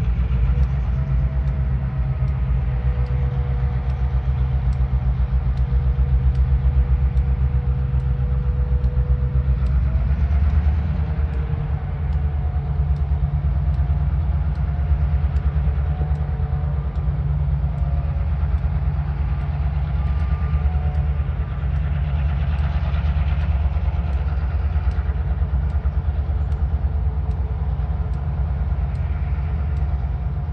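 Diesel locomotive running under load as it pulls a cut of freight cars, a steady deep rumble with faint wavering whines above it.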